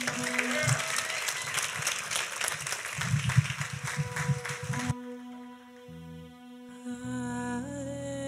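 Congregation applauding over a held musical note. About five seconds in, the applause cuts off abruptly and soft, slow music with long held notes carries on.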